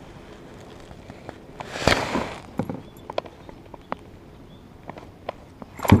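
A hooked pike splashing at the surface beside a kayak: a short splash about two seconds in and another near the end, with scattered light knocks and clicks on the plastic hull in between.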